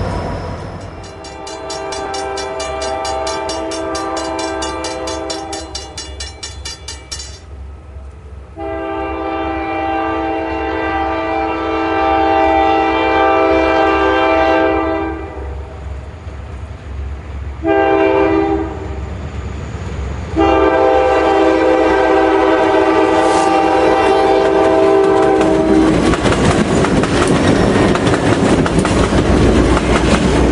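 Diesel freight locomotive air horn sounding the grade-crossing signal: two long blasts, one short and a final long one, growing louder as the train approaches. Near the end the horn stops and a loud rumble of the oncoming train takes over.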